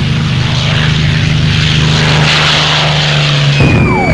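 Piston engine of a single-engine propeller fighter running, a steady drone that cuts off near the end. Just as it stops, the long falling whistle of a dropping bomb begins.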